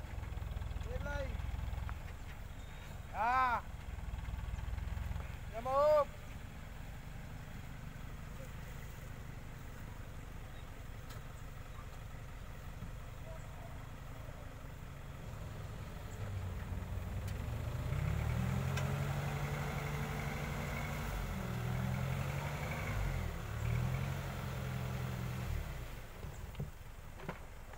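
Dump truck engine running at idle, with a man calling out three short times in the first six seconds. From about 16 s in the engine revs up and holds a higher, wavering speed as it drives the hydraulic hoist that raises the bed and tips out the load of earth.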